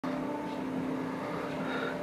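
Upright piano notes sounding together and ringing on steadily as the keys are held down, one higher note fading out about halfway through.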